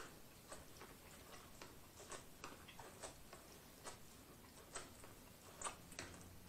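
Close-miked chewing and biting of buttered corn on the cob: faint, irregular crisp clicks and crunches, about two a second.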